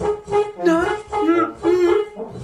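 French horn notes: a steady held tone with several shorter swooping, bending notes beneath it, played so that a chair seems to be making musical sounds.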